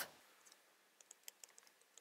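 Near silence, with a few faint, light ticks about a second in from a stylus writing on a tablet screen.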